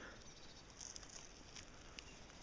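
Near silence: a faint outdoor hiss, with faint rustling and scraping as a piece of bark lying on the soil is lifted and turned over.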